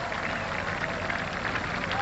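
Golf gallery applauding steadily after a birdie putt drops.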